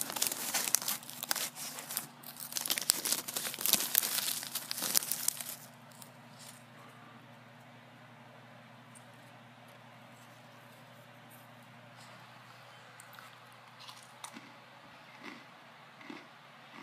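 Crinkling of a freeze-dried astronaut ice cream pouch and crunching of the dry pieces as fingers pick through them, for about the first five seconds. After that it goes quiet, with a few faint clicks near the end.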